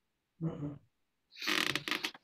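A person's voice: a short murmur about half a second in, then a louder breathy exhale near the end.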